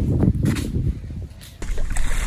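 Low rumbling handling and wind noise on a handheld phone's microphone, with soft footsteps in sand, dipping briefly near the end.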